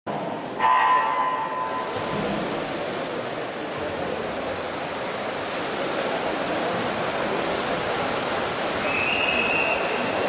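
An electronic race-start beep sounds once, about a second long, about half a second in. A steady rush of splashing water follows as the swimmers swim freestyle, with a brief high whistle-like tone near the end.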